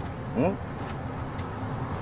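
Steady road and engine noise heard inside a moving car's cabin, with a short vocal sound from a passenger about half a second in.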